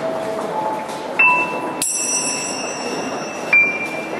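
Live instrumental music from keyboard and percussion, with bright struck bell-like notes about every two seconds and a shimmering chime stroke near the middle, over a steady background hiss.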